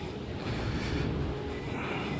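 Steady background hum and rumble of a large, mostly empty underground metro station concourse.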